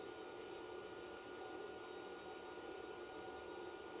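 Quiet room tone: a faint, steady hiss with a thin steady high tone running through it.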